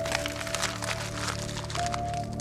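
A sheet of parchment being crumpled in the hands: a dense crackling that starts suddenly and thins out near the end, over sustained background music.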